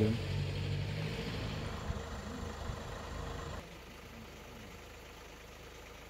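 A vehicle engine idling with street noise. The engine sound drops away about three and a half seconds in, leaving quieter background noise.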